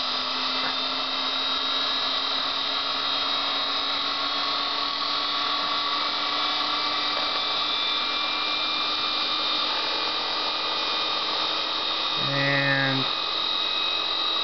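Electric motor running and slowly speeding up under a current-limited bench power supply, a steady whine whose pitch rises gradually. It spins up slowly because it is not getting much amperage.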